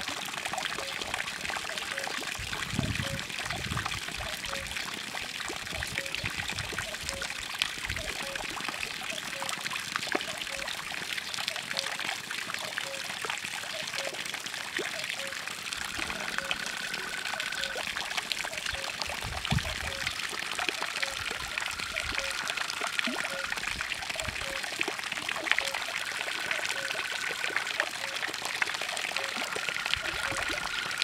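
Water from a fountain jet falling as droplets and splashing steadily into a pond.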